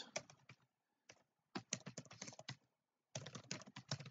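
Quiet typing on a computer keyboard: quick runs of keystrokes separated by short pauses.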